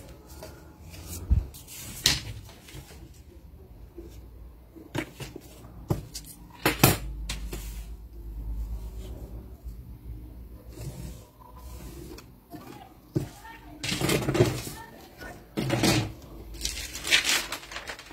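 Wooden pattern-drafting rulers being picked up and set down on kraft paper on a table, giving a few sharp knocks spread through, with rustling and handling of the paper near the end.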